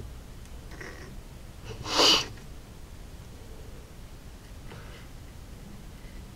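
A person sneezes once, a short loud burst about two seconds in.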